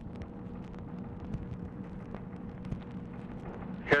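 Background noise of an old recorded telephone line: a steady hiss with a low hum and faint, scattered clicks from the Dictabelt recording.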